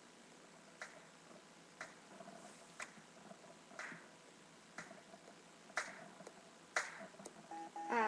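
Faint, quiet count-in beat before singing: a sharp clap-like click about once a second, evenly spaced, over faint low music, most likely the song's backing track playing. A girl's singing voice comes in at the very end.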